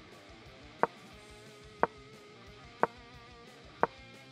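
Quiet background music with a sharp click about once a second.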